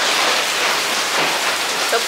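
Rain falling steadily, a loud, even hiss of drops with no let-up.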